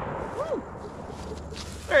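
The tail of a black-powder blunderbuss shot echoing and dying away over the first half-second, followed by a short vocal exclamation; a man starts talking at the very end.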